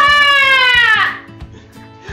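A loud, high-pitched squeal of laughter in one long breath, falling in pitch and dying away after about a second. A quiet music beat runs underneath.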